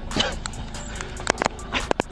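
A crow scrabbling and flapping its wings on a man's shoulder: rustling, with several short sharp flaps or knocks in the second half.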